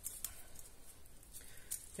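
Faint handling of a deck of oracle cards as a card is drawn and laid on a cloth-covered table: a couple of soft taps and rustles over quiet room tone.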